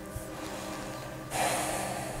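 A person drawing a breath, a short noisy intake lasting well under a second that starts past the middle, over faint sustained background music.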